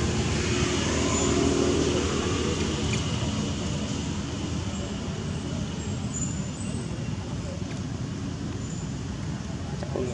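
Road traffic: a vehicle passing, a low rumble with engine hum that is loudest about a second and a half in and then slowly fades away.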